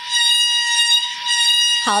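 Recording of a faulty clothes dryer played back from a phone held to a microphone: a loud, steady high-pitched tone, dipping briefly about a second in. The speaker calls the dryer a bit broken and the noise really loud.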